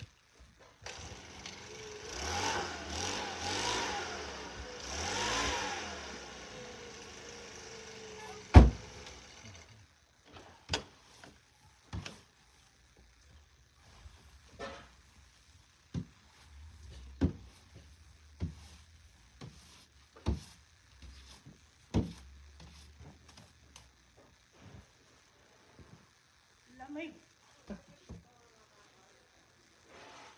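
An engine running with its pitch rising and falling for several seconds, cut off by one sharp, loud thump. After it come scattered single knocks and thuds as snow is knocked and cleared off a snow-buried car.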